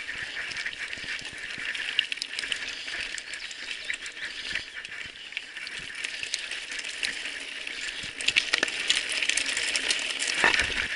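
Mountain bike tyres rolling over a loose gravel and stone track: a steady crunch with frequent rattling clicks from the bike. The clicks get busier and louder near the end as the ground turns rockier.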